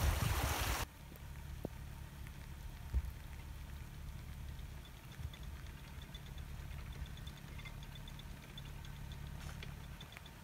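Water rushing through a canal lock's paddles, cut off abruptly under a second in. After that a narrowboat's diesel engine runs with a low steady hum, with a few faint light ticks above it.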